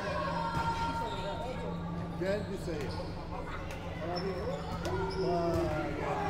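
Volleyball thuds, the ball being struck and bouncing on the wooden floor of a sports hall, several sharp knocks echoing through the hall, with girls' voices calling out between them over a steady low hum.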